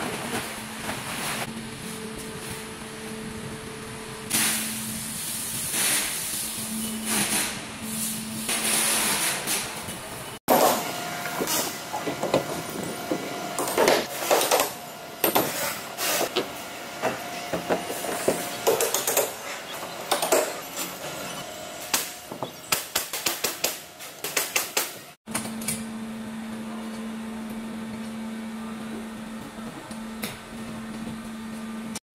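Plastic film rustling as it is spread over a machine, over a steady hum. Then a long run of sharp knocks and bangs as a wooden crate is put together, with a quick string of taps near the end of that stretch. At the end, the steady hum alone.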